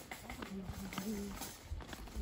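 Footsteps on stone block paving, irregular knocks and thuds, with a faint voice in the background.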